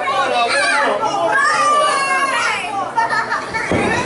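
Ringside crowd of children and adults shouting and calling out over one another, the children's voices high-pitched. Near the end, a heavy thump from the ring.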